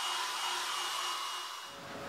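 Hand-held electric hair dryer blowing: a steady airy hiss with a thin high whine, fading away near the end.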